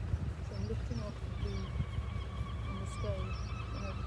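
Wind buffeting an outdoor microphone as a low, uneven rumble. Over it, a steady high tone starts about a second in and is held for about three seconds, with scattered short calls throughout.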